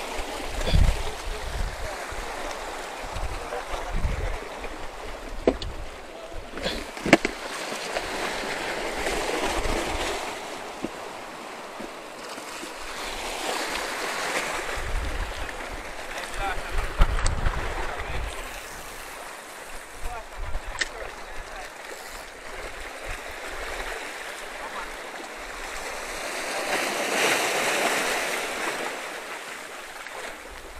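Surf washing over shoreline rocks, swelling and falling every few seconds, with some low thumps and a few sharp clicks.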